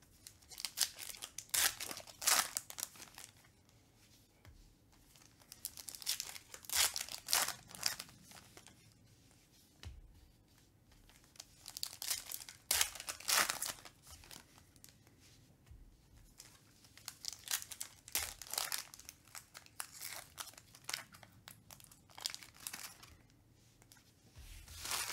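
Foil trading-card pack wrapper crinkled and torn open by hand, in several bursts of crackling, the loudest about two, seven and thirteen seconds in.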